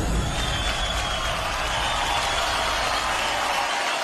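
Dance music cuts off at the start, leaving steady audience applause, a dense even clatter of many hands clapping.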